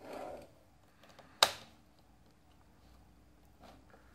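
A mechanical pencil drawing a line along a drafting ruler on paper, a brief soft scratch at the start, then one sharp click about a second and a half in and a faint tick near the end as the pencil and ruler are handled.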